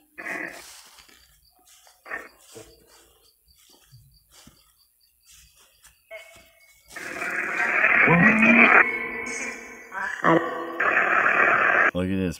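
Ghost-hunting spirit-box app playing through a phone's small speaker. After a few faint clicks and rustles, from about seven seconds in there is loud, choppy radio-like static mixed with garbled voice fragments, with a short break near ten seconds.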